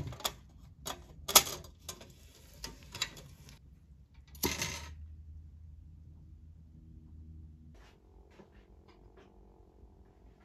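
Sharp metallic clicks as the brass lantern's door and a lighter are handled, the loudest about a second and a half in, then a short rushing burst about four and a half seconds in as the acetylene burner is lit.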